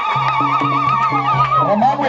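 One long, high ululation trill, wavering rapidly in pitch, that glides down and stops near the end. Under it, music with a low note repeating about four times a second.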